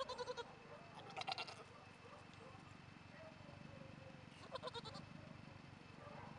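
Nigerian Dwarf goat kid bleating three times: short, quavering, high-pitched bleats, near the start, about a second in, and again about four and a half seconds in.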